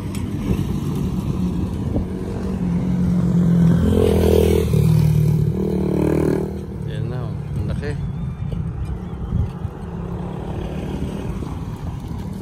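A motor vehicle passing on the road close by: a steady low engine rumble that builds to its loudest a few seconds in and then eases off.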